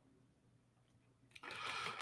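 Near silence, then near the end about half a second of quick computer-keyboard typing as a short command is keyed in.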